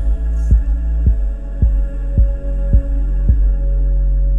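Instrumental passage of a deep-house/electronica track: a soft, deep beat like a heartbeat, about two a second, over a sustained bass and synth pad. The beat drops out near the end, leaving the held pad and bass.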